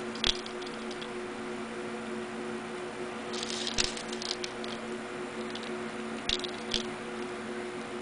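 Small pieces of painted aluminum dryer-vent foil clicking and crinkling as fingers pick them up and press them onto a glued card base. There is a single click near the start, a cluster of crackles a little past three seconds in, and two more ticks later, over a steady low hum.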